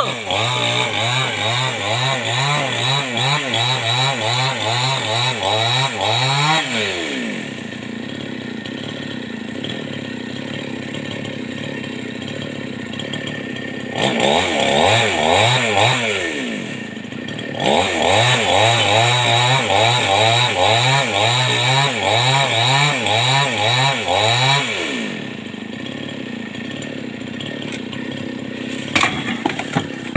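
Chainsaw engine cutting sưa (Tonkin rosewood) limbs, its pitch wavering up and down under load in three long cuts, dropping back to a quieter idle between them and near the end.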